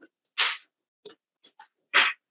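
A few short paper rustles and faint ticks from sheets of paper being handled at a table, with a louder rustle at the end.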